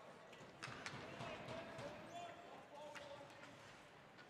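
Faint ice hockey rink sounds: a few sharp clacks of sticks and puck on the ice, with distant players' voices calling out.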